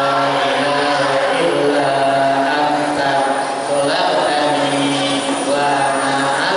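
A man's voice chanting into a microphone in long, slowly changing held notes, in the manner of a religious recitation.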